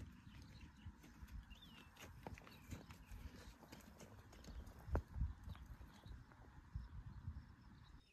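Faint, irregular footsteps and small knocks on gravel, with one somewhat louder thump about five seconds in.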